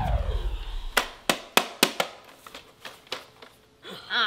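Music winding down in a falling pitch glide that fades out within the first half-second, then a quick run of sharp plastic clicks and knocks from a portable CD boombox being handled and its buttons pressed, growing fainter toward the end.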